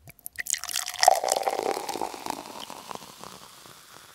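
Wine being poured into a glass: a few clicks, then a splashing pour that is loudest about a second in, then a fizzing crackle that slowly fades.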